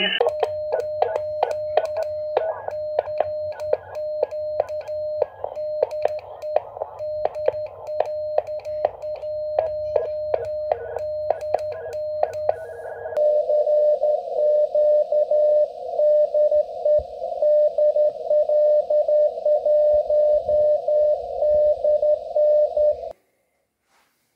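Morse code (CW) tone from a ham radio transceiver: a single steady beep keyed on and off with a click at each stroke. About halfway through it turns into a denser, nearly continuous run of the same tone, which cuts off suddenly shortly before the end.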